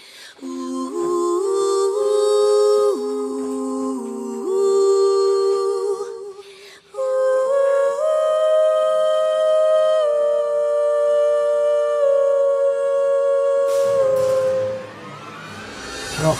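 Music: a wordless, voice-like melody of long held notes moving up and down in steps, fading out near the end.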